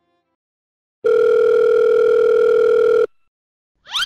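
Telephone ringing tone: one steady electronic tone lasting about two seconds. A short rising whoosh follows near the end.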